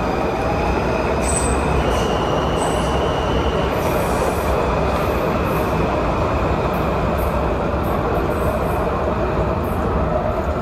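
Metrorail subway train of 1987 Breda 3000-series cars running on the track, heard from on board: a steady rumble with thin high squealing tones from the wheels. One tone steps up in pitch about two seconds in and drops back at about four seconds.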